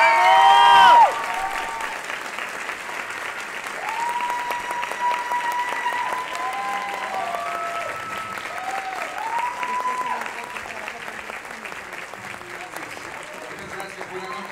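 Theatre audience applauding and cheering, opening with a loud burst of whoops in the first second, then steady clapping with scattered drawn-out shouts.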